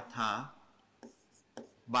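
A stylus tapping and sliding on an interactive display's screen as numbers are written, with a few light taps in the second half.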